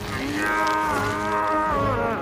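A man's long strained groan of effort, held at a steady pitch for well over a second and dropping away near the end.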